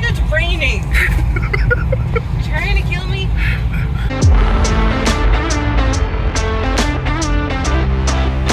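Low road and engine rumble inside a moving car's cabin, with people's voices over it. About four seconds in, background music with a steady beat comes in and takes over.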